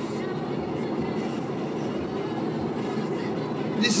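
Steady low rumble of a car's running engine and cabin noise, heard from inside the car.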